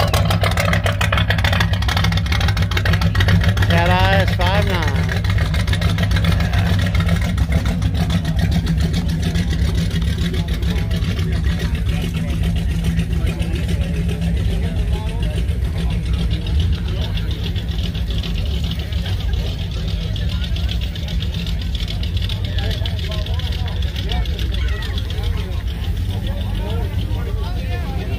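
Classic car engines running at a slow crawl, a steady deep rumble. At first it comes from a 1959 Chevrolet Impala with side-exit exhaust rolling past.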